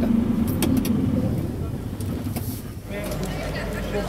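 Renault Trucks T 460 diesel engine being switched off with the key: its steady idle hum fades away over about two seconds. Just before the end it gives way abruptly to a different steady outdoor background.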